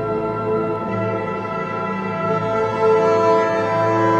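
Slow orchestral music with long held chords, swelling louder about three seconds in.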